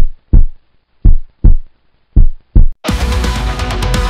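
A heartbeat-like intro of paired low thumps, three pairs about a second apart, then about three seconds in a djent metal band comes in loud with heavily distorted electric guitar and drums.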